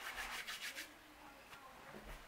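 Hands rubbing palm against palm: several quick, faint rubbing strokes in the first second.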